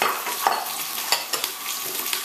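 Garlic and fresh herbs sizzling in olive oil in a large pot, stirred with a wooden spoon that knocks and scrapes against the pot a few times, loudest about half a second in.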